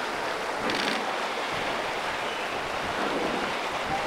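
Steady rushing of a fast, shallow river running over rocks and riffles.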